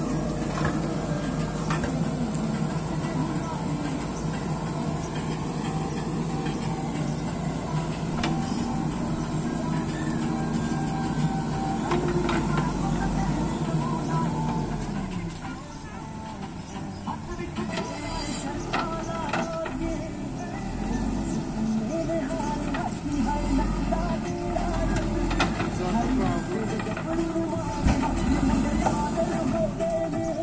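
JCB 3DX backhoe loader's diesel engine running under load as the backhoe digs, steady and loudest for the first half, then dropping back about halfway through.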